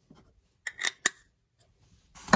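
Three short, sharp clicks in quick succession, starting about a third of the way in: a metal lens-mount adapter and its caps being handled on a tabletop.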